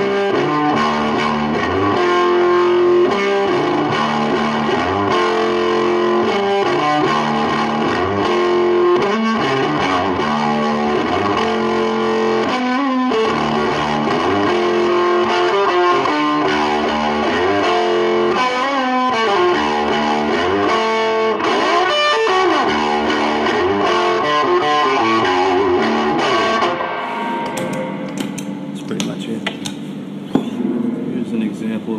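Epiphone Casino electric guitar played through stacked overdrive and effects pedals: a heavily distorted, slow repeating riff of held, sustaining notes. The playing drops in level near the end.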